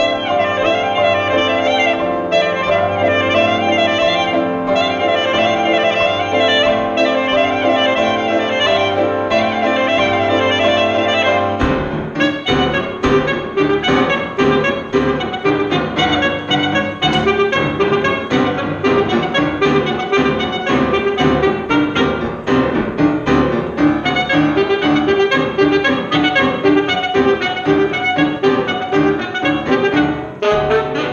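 Saxophone and grand piano playing contemporary chamber music: long, wavering saxophone notes over held piano tones, then about twelve seconds in a sudden switch to fast, choppy, hammered notes from both instruments.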